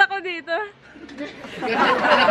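A girl laughing in quick, rapid pulses, then several voices chattering over each other, louder, from about a second and a half in.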